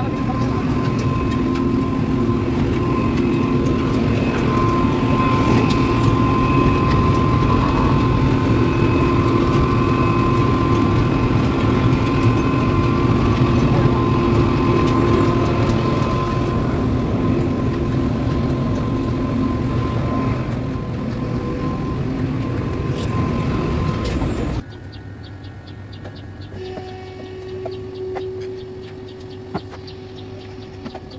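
Asphalt mixing plant machinery running: a loud, steady mechanical noise with several steady humming tones. About 25 seconds in it drops away abruptly to a much quieter indoor sound with a steady hum.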